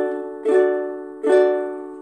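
Ukulele strummed with single downstrokes: one strum about half a second in and another just past a second, each chord left ringing and fading away.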